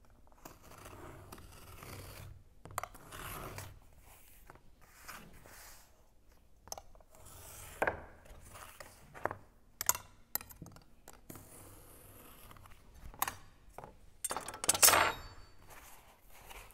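An ordinary table knife scraping along corrugated cardboard in repeated strokes to score fold lines, with a few sharp clicks between strokes. Near the end comes the loudest stretch, as the cardboard is bent along the scored line.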